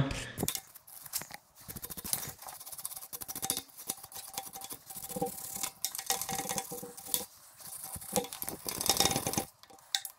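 Small brass wire hand brush scrubbing the threads of a metal pipe fitting on an air compressor tank, with rapid, irregular scratching strokes of metal bristles on metal that pause briefly just before the end.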